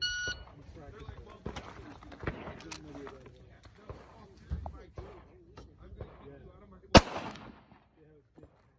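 A shot timer beeps briefly to start the stage. About seven seconds in, a single loud shot comes from an M1918 Browning Automatic Rifle, a .30-06 fired from an open bolt, with a short echo after it.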